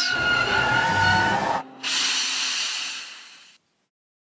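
Steam locomotive sound effect. For about a second and a half there are several steady high tones over a low rumble, which stop suddenly. Then comes a hiss of released steam that fades away.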